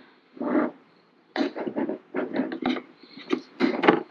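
Plastic modular hose segments being handled and pushed into a plastic assembly tool: a string of short clicks, knocks and scrapes, plastic against plastic, as the segments are worked together.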